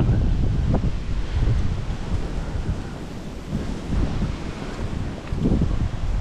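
Wind buffeting the microphone: an uneven, low rushing noise in gusts, easing in the middle and picking up again near the end.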